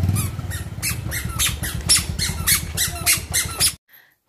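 A Bajaj Pulsar 150's single-cylinder engine running and fading as the motorcycle pulls away, over a steady run of short high squeaks, about three a second. Everything cuts off suddenly near the end.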